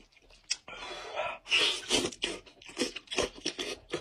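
Cooked goat-head meat being torn apart by hand, two longer wet ripping stretches about a second and two seconds in. Around them come close-miked mouth sounds of chewing and lip-smacking as short clicks.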